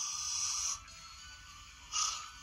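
A man making breathy hissing sounds with his mouth: one long hiss that stops about three-quarters of a second in, then a short one near the end, over soft background music.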